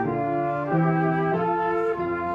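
Two flutes playing a melody together over upright piano accompaniment, the notes moving steadily about every half second or so.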